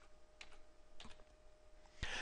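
A few faint computer keyboard keystrokes, about three short clicks, over a faint steady hum.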